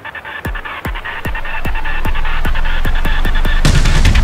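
Deathstep electronic track in a build-up: a regular kick drum and quickening percussion hits over a swelling bass rumble. The full drop lands near the end.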